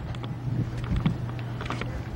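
Outdoor background noise with a steady low hum and a few light clicks.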